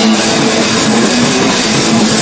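Crust/grind punk band in full swing: loud distorted electric guitar and drum kit playing as a dense, unbroken wall of sound.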